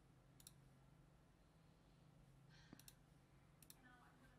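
Near silence with a few faint computer mouse clicks: a single click early on, then two quick double-clicks in the second half.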